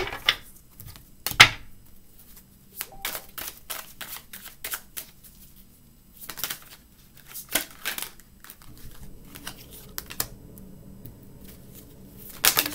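A deck of tarot cards being shuffled by hand: irregular soft flicks and slaps of the cards, with one sharp slap about a second and a half in.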